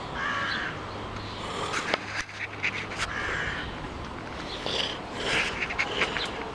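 Several short bird calls, each about half a second long, repeated through the few seconds, with a few sharp clicks around the middle.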